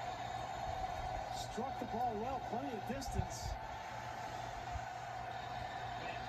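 Faint sound of a football broadcast playing on a television: a commentator's voice heard distantly through the TV speakers over a steady hum.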